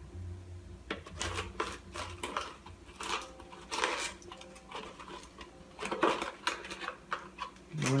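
Thin plastic bottle crackling and clicking in the hands, a run of sharp irregular clicks, as a small plant is pushed into its open end.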